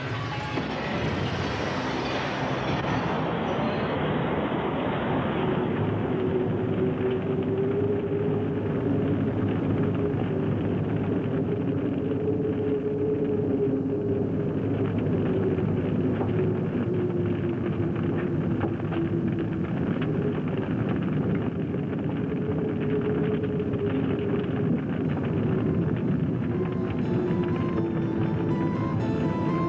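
A car explosion's blast dying away over the first few seconds, then the steady noise of the car burning, under music with long held notes.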